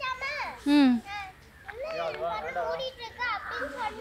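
Children's voices talking and calling out, high-pitched and rising and falling, with one loud call just under a second in.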